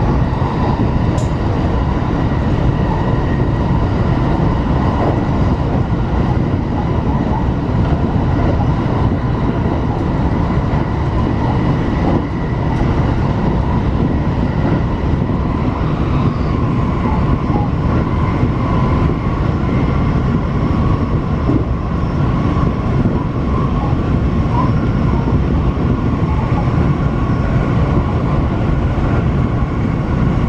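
Electric train running steadily along the line, heard from inside the front car: a continuous rumble of wheels on rail with a faint steady whine above it.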